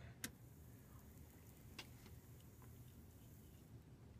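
Near silence with a faint low hum. There is a sharp click just after the start, the switch of a benchtop power supply being turned on, and a fainter click a little under two seconds in.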